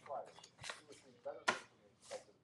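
A sheet of paper handled close to the microphone, rustling in short bursts with one sharp crackle about one and a half seconds in, amid faint mumbled speech.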